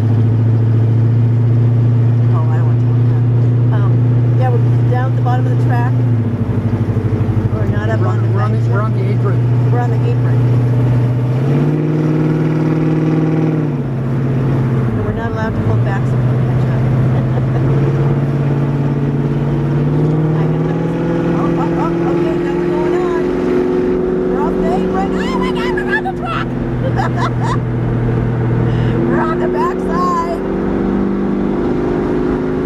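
1971 Pontiac Firebird's engine running steadily while lapping, heard from inside the car; its pitch steps up about twelve seconds in, drops back a couple of seconds later, then climbs gradually in the second half.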